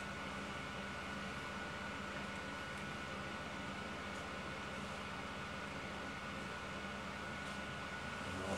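Steady low electrical hum and hiss with a faint, steady high-pitched tone. Nothing starts or stops; it is the background of an electronics test bench.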